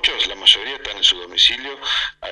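A man speaking Spanish over a telephone line, his voice thin and band-limited.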